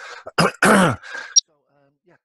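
A man coughing to clear his throat: a short cough, then a longer one, followed by a brief high-pitched blip.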